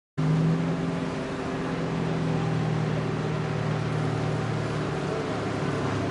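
A vehicle engine running steadily, a low hum with a wash of noise over it.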